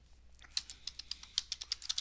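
Computer keyboard being typed on: a quick run of keystrokes starting about half a second in, as the WinDBG command "frame" is entered.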